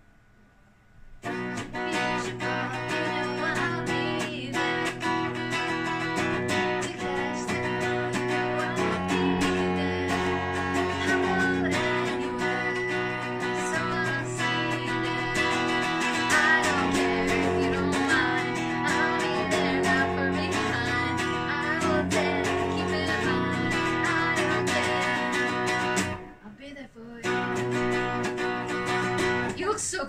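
A guitar being played continuously, a string of plucked notes and chords. It starts about a second in, breaks off briefly near the end, then picks up again.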